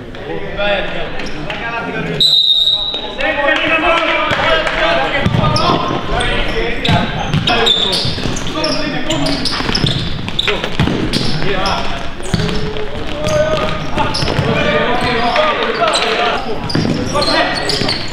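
Indoor futsal match in an echoing sports hall: players shouting to each other over the ball being kicked and knocking on the hard floor, with a short "Hei!" near the end. The sound drops out briefly about two seconds in.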